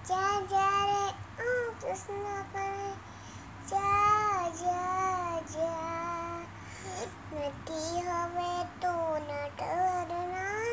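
A young girl singing a Hindi Krishna bhajan alone in a high child's voice, in held, wavering notes split into short phrases with brief pauses.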